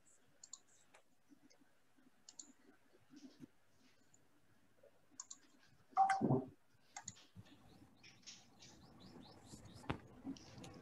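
Scattered faint computer-mouse clicks and small taps over quiet room tone, as a slideshow is opened and started on screen. One brief louder sound comes about six seconds in, and the clicking grows busier near the end.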